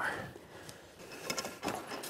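A few faint, short clicks and knocks from handling a pike in a mesh fish cradle in the boat. A spoken word trails off at the start.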